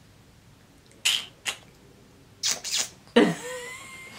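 A person's short breathy puffs and snorts of held-back laughter, three of them, then a louder voiced laugh breaking out near the end.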